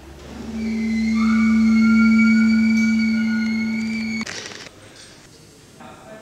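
A single sustained ringing tone, low-pitched with fainter higher tones above it, swelling in over about two seconds, easing slightly, then cutting off suddenly about four seconds in.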